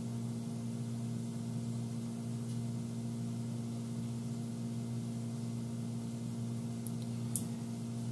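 Steady low electrical hum with a faint click near the end.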